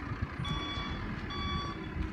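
Vehicle reversing alarm beeping: two long electronic beeps with a short gap, the first about half a second in, over a low wind rumble on the microphone.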